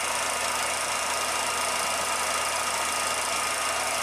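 Steady mechanical whir and hiss of a 16mm film projector running, unchanging throughout, with a few faint steady tones in it.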